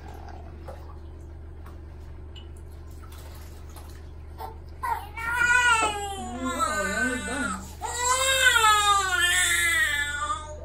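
Newborn baby crying in the bath: two long wailing cries starting about five seconds in, with a brief break between them.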